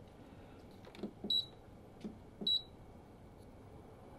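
Buttons clicked on the control panel of a floor-standing air purifier, each press answered by a short, high electronic beep: two beeps about a second apart.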